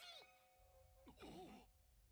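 Near silence, broken about a second in by a short, breathy sigh.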